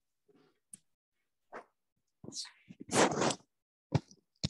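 Choppy, broken-up audio of a video call on a failing connection: short scraps of a remote speaker's voice and codec noise that cut in and out abruptly, with the loudest burst about three seconds in.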